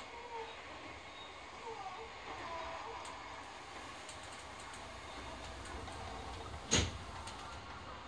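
Low, steady running rumble inside the car of an Odakyu 4000 series electric train on the move, with a single sharp knock about seven seconds in.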